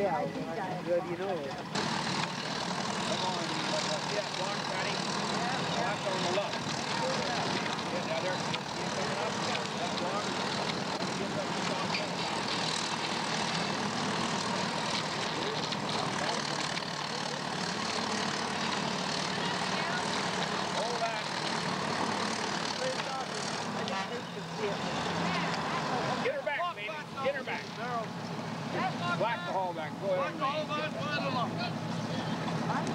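Steam donkey yarding engine running steadily while it drags a choked log up the slope on its cable. It starts suddenly about two seconds in and cuts off suddenly a few seconds before the end, with voices on either side.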